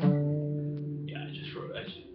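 Low notes plucked on an acoustic guitar, ringing out and slowly dying away over about a second and a half.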